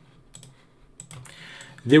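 Faint, scattered clicks of a computer keyboard and mouse: a few in the first half second and more about a second in. A man's voice begins just before the end.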